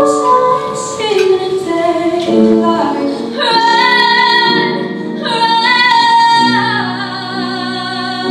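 Young female vocalist singing solo, with long held notes; the performance changes abruptly to another song about three and a half seconds in.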